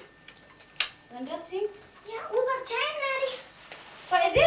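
A young child's high voice talking, without clear words, preceded by a single sharp click just under a second in.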